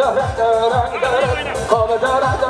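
Kurdish folk dance music for a halay: a singer's long, wavering melodic lines over a steady, driving drum beat.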